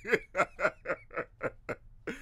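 A man laughing: a run of about seven short ha-ha pulses, roughly four a second, stopping just before the end.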